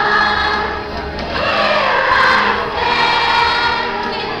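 A young girl singing into a microphone over a recorded music backing track, with many voices singing together.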